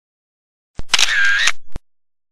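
Camera shutter sound effect: a sharp click, a brief whirr, then a second click, about a second long all told.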